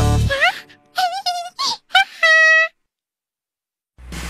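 A children's song cuts off, followed by a rising glide and a handful of short, squeaky cartoon-voice sounds with wobbling pitch, the last one held for about half a second. Then the sound track goes completely silent.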